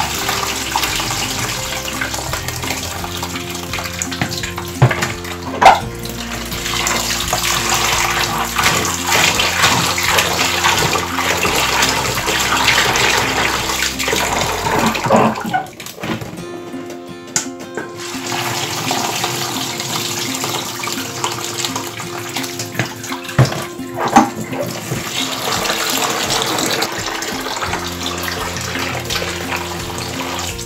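Tap water running and splashing into a bowl of soaked, peeled black-eyed beans in a steel sink, with hands swishing the beans through the water. The flow drops away for about two seconds around the middle. A few sharp knocks stand out above the water.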